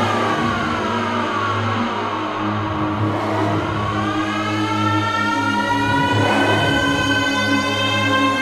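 UK bounce / scouse house dance music: a synth sweep glides down in pitch, then climbs back up, over a steady low bass.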